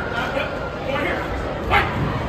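Several voices shouting over the chatter of a hall, with one short, loud shout near the end.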